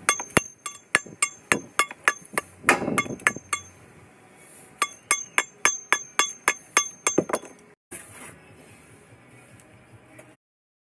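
Rapid, sharp metallic taps with a ringing note, about three to four a second, in two runs separated by a pause of about a second, from a bricklayer's steel hand tool striking brick.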